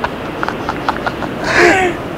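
Men laughing: a run of short breathy laugh pulses, then a louder burst of laughter about a second and a half in.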